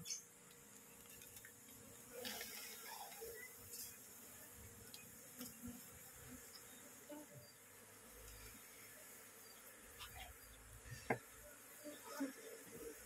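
Faint buzzing of a disturbed Asian honeybee (Apis cerana) colony being scooped out of its hive by hand, with a few soft clicks and knocks, the sharpest about a second before the end.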